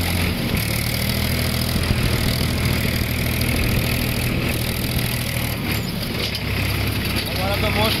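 Tractor's diesel engine running steadily as the tractor drives along, a constant low drone whose note shifts slightly about half a second in.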